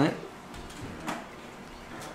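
A pause in a man's speech: quiet room tone, with one faint brief noise about a second in.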